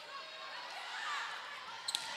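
Quiet gymnasium crowd murmur, then two sharp slaps of a volleyball being struck near the end as a rally gets under way.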